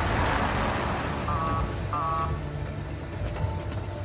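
Ambulance pulling up with a low engine rumble and a rush of noise at first, then two short beeps a little over half a second apart.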